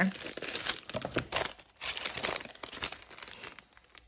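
Clear plastic packaging sleeve crinkling and rustling irregularly as a sketchbook is handled inside it, with a brief pause a little under two seconds in.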